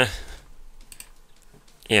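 A few light clicks at a computer, between a man's drawn-out 'uh' and a short 'yeah'.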